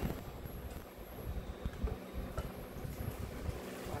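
Hot water from an electric kettle being poured into a stainless steel pot, over the low steady hum of an induction cooker running.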